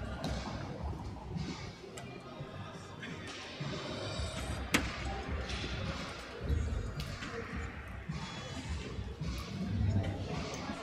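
Large-hall ambience: background music over indistinct crowd chatter, with one sharp click about halfway through.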